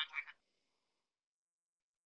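The last syllable of a spoken sentence, then near silence.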